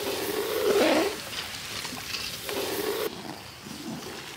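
Syrup boiling in a metal wok over a wood fire, with a wavering animal call, the loudest sound, about half a second to a second in and again near three seconds.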